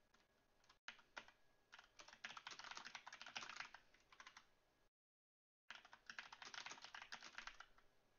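Faint computer keyboard typing in quick runs of keystrokes, with a break of about a second in the middle.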